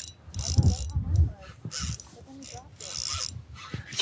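Spinning reel being worked against a hooked fish pulling on the bent rod, its mechanism sounding in several short spells.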